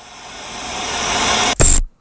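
Hiss of noise swelling steadily louder, then a short louder burst with a high tone and a sudden cut to silence near the end: the closing noise swell of the music video's soundtrack as the video ends.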